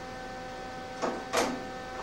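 Steady electrical hum, a stack of fixed tones, broken about a second in by two short sharp knocks about a third of a second apart, from hardware or drums being handled at a drum kit.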